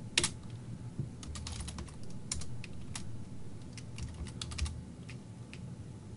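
Computer keyboard typing: irregular keystrokes in short runs with pauses between.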